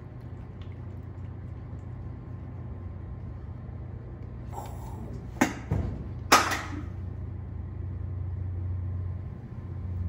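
Steady low hum, broken by two sharp clacks about a second apart midway through as a plastic eagle-shaped novelty drink container is handled.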